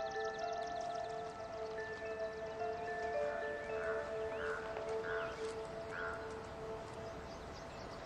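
Soft background music of long, steady held notes, with a faint rapid high-pitched chirping running over it.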